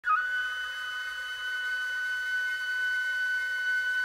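A flute holding one long, steady high note after a quick slide up into it at the start.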